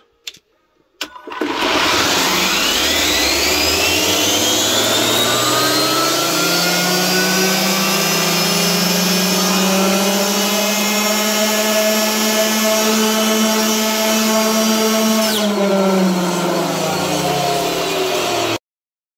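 Arrma Limitless RC car's Castle 2028 800kV brushless motor and drivetrain spinning up on a roller dyno: a high whine climbs in pitch for several seconds to near top speed (about 149 km/h), holds steady, then drops sharply near the end as the throttle is released and the car coasts down. A few clicks come just before the run-up.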